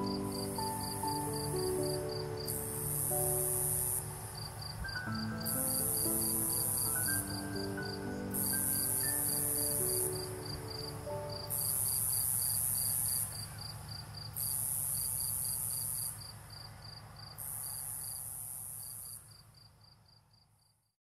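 Night insects calling: a cricket-like trill of rapid, even pulses and a higher buzzing call that comes in phrases of about a second with short gaps. Soft music sits under them and fades out about halfway through, and the insect calls fade away at the very end.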